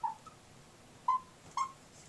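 Dry-erase marker squeaking on a whiteboard while writing: three short squeaks, the loudest about a second in.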